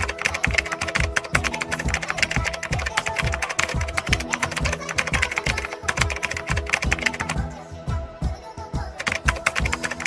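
Backing music with a deep bass beat about three times a second, under a fast, continuous clatter of keyboard-typing clicks that thins out briefly about eight seconds in.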